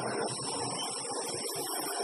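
Quiet room tone: a steady low hiss with a faint, thin high-pitched whine.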